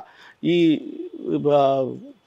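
A man's voice making two drawn-out wordless sounds, the second longer, as he chokes up with emotion.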